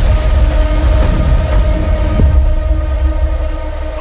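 Film trailer sound design: a steady, horn-like drone over a deep rumble, easing off slightly near the end.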